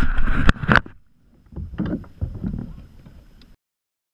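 Close handling noise on a kayak-mounted action camera: rumbling wind and water noise with several sharp knocks and bumps against the kayak. The audio cuts off suddenly near the end.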